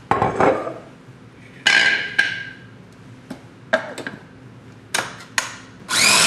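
Kitchenware being handled around a food processor: about seven sharp clicks and knocks, two of them about two seconds in ringing briefly like a clink. The food processor's motor starts right at the very end.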